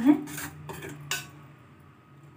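A steel spoon stirring a thick paste of amchur and water in a metal bowl, clinking against the bowl a few times in the first second or so.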